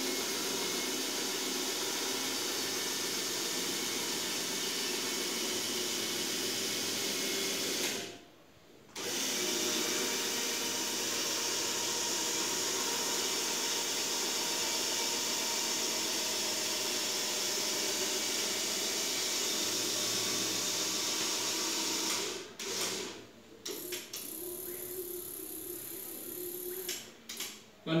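Small electric geared motors of a model truck and rotating trailer running with a steady whir. They stop for about a second some eight seconds in, run again, then start and stop in short spurts over the last few seconds.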